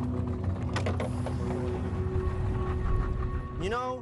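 A steady low rumble on a boat out on open water, with the sustained notes of background music held over it. Near the end there is a short rising-and-falling tone, and the rumble stops.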